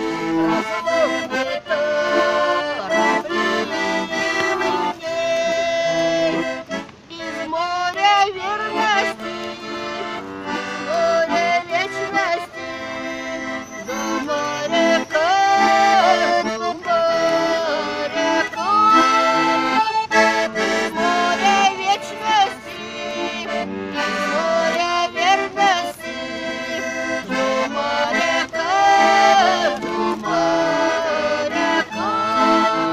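Garmon (Russian button accordion) playing the melody with chord accompaniment in an instrumental passage of a folk song.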